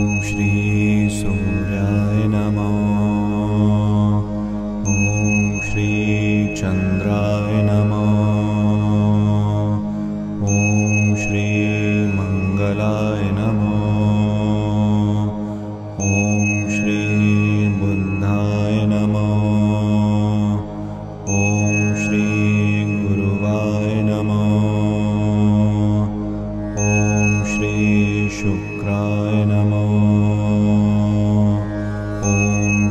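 A Sanskrit mantra chanted over a steady low drone, repeating in cycles about five and a half seconds long. A bright chime rings at the start of each repetition.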